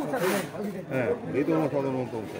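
Men's voices talking and calling out, with speech running continuously.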